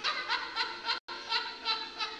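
Laughter, in short repeated bursts, cut by brief dropouts in the audio.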